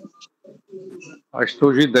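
Mostly speech: after a few faint clicks and a short, low, steady sound, a man starts speaking over a video-call connection about a second and a half in.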